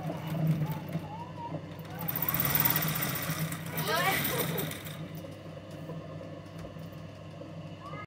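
Sewing machine running with a steady low hum as it stitches through fabric, louder for a stretch in the middle, with voices talking in the background.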